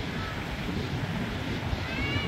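Wind on the microphone over the steady wash of small waves breaking on the shore.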